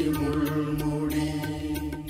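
Mixed choir singing a Christian devotional song, holding one long note over an electronic keyboard accompaniment; the note tails off near the end.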